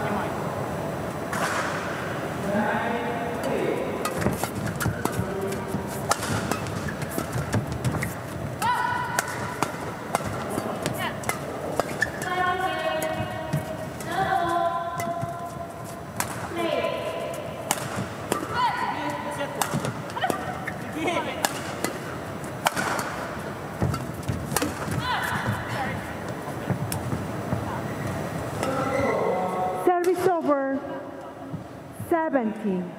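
A badminton rally: rackets striking the shuttlecock in a string of sharp cracks, with shoes squeaking on the court floor in short pitched squeals.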